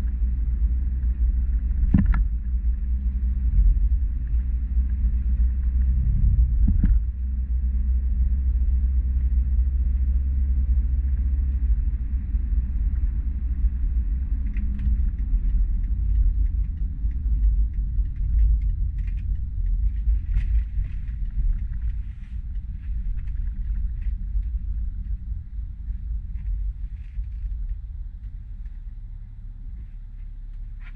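Interior sound of a 2013 BMW X5 xDrive35d driving: a steady low rumble from its turbodiesel engine and tyres on the road. There is a sharp knock about two seconds in and another about seven seconds in. The rumble grows quieter in the last several seconds as the car slows.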